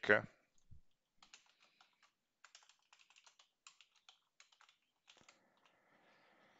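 Typing on a computer keyboard: a run of faint, quick, irregular keystrokes.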